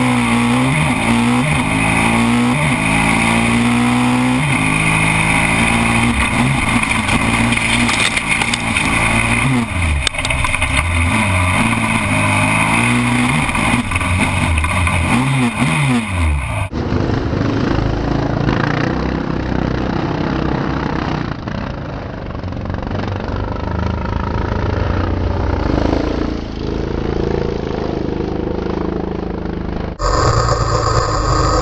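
Crosskart engine heard from the inboard camera, revving hard and dropping back again and again through gear changes. About halfway through the sound changes abruptly to a duller, rougher engine noise without a clear pitch, with the kart in the gravel after a first-corner crash while other karts' engines pass.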